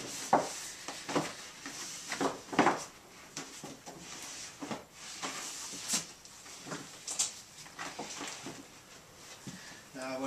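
Thick reinforced polyethylene pond liner (Dura-Skrim) rustling and crinkling as it is pulled and smoothed by hand, in irregular scrapes with a few sharper crackles.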